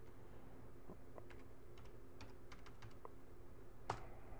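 Faint keystrokes on a computer keyboard, a scattering of light clicks as a program number is typed in, the loudest click near the end, over a low steady hum.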